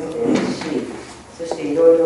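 A person speaking in a small room, with a brief noisy sound about half a second in and a small click about one and a half seconds in.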